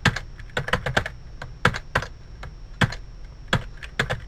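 Typing on a computer keyboard: irregular keystrokes, a few per second.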